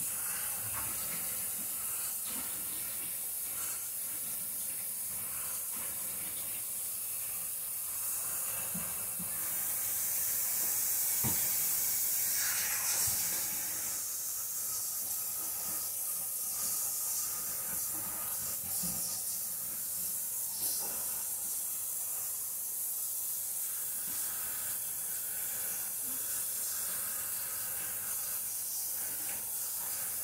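Water running steadily from a bathroom sink tap while hair is washed under it, a little louder for a few seconds about ten seconds in, with a few small knocks.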